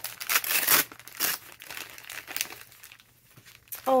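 Paper wrapping being crinkled and torn open by hand as a small package is unwrapped, busiest in the first second and a half, then thinning to soft rustles and dying away.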